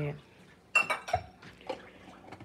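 Kitchenware clattering as it is handled: a quick cluster of sharp clinks and knocks about three-quarters of a second in, then one lighter knock near the end.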